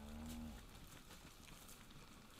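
A short, low moo from one of the cattle, trailing off about half a second in, followed by faint background near silence.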